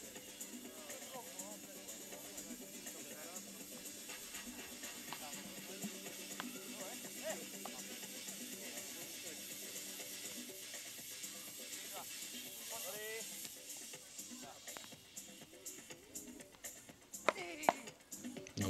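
Background music played over the court's loudspeakers, heard faintly, with some voices. Near the end come a few sharp knocks: the ball being struck by beach tennis paddles in a rally.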